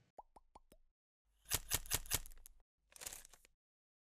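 Sound-effect sting for an animated logo: four quick plops falling in pitch, then a run of about five sharp clicks over a hiss, then a brief hissing swish.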